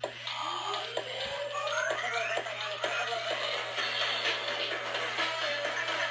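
Robosapien V2 toy robot playing its built-in electronic dance music through its small speaker, opening with rising synth sweeps in the first two seconds, then a busy beat. This is the dance routine that marks this robot as having a prototype V2 board, according to the owner.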